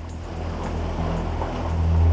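Low, steady engine rumble of the Ford Explorer growing louder as it approaches, under background music.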